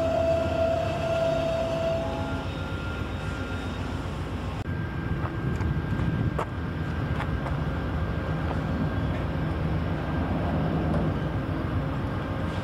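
VIA Rail passenger train running by: a steady low rumble with some steady tones over it. The sound changes abruptly about five seconds in, and a few sharp clicks follow.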